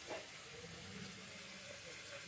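Faint steady hiss with a low hum under it, unbroken, with a small blip just after the start.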